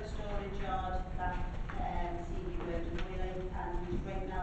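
Speech: one person talking continuously, over a steady low background hum.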